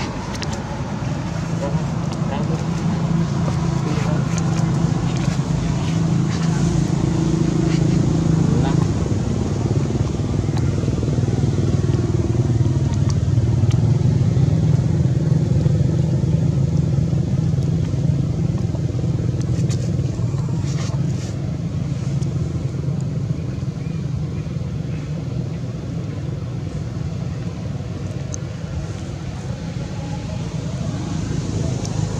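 A motor vehicle engine runs steadily with a low hum that grows louder through the middle and eases off toward the end, with people's voices in the background.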